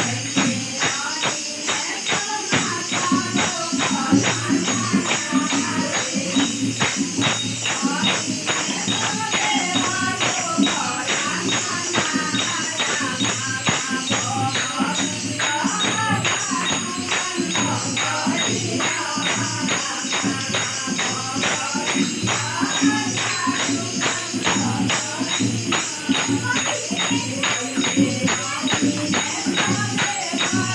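A group of women singing a Shiv charcha devotional song in chorus, accompanied by a dholak barrel drum and hand-clapping, which keep a fast, steady beat.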